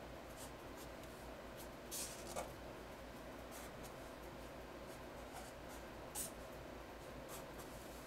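Black Sharpie marker drawing on paper: faint, scratchy strokes, with short louder swishes twice about two seconds in and again a little after six seconds.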